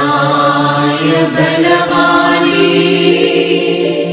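Christian devotional song: singing in a slow chant with long held notes over instrumental backing.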